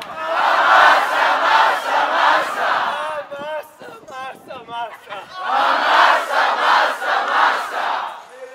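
A crowd of young people shouting together in two loud bursts of about three seconds each, with a few single voices calling out in the lull between them.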